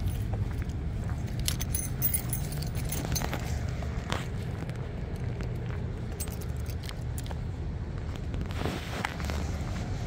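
Footsteps of a person walking on an asphalt path, with scattered light clicks over a steady low rumble.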